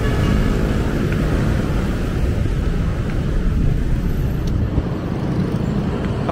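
Steady rumble of road traffic on a busy city avenue, cars driving past close by.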